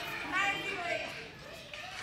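Faint voices talking and calling in the background, with no music.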